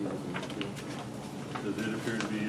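Low voices in a small hearing room, with a few light clicks and paper handling about half a second in and a low hummed voice near the end.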